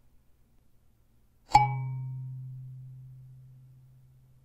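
A single tine plucked once on a small coconut-shell kalimba about a second and a half in: a sharp attack, then a low note that rings on and fades away slowly.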